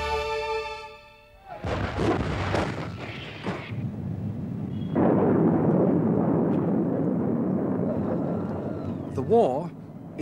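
Orchestral theme music ends within the first second. Then come explosions from war news footage: several loud blasts from about two to four seconds in, followed by a steady noisy din. A voice is heard briefly near the end.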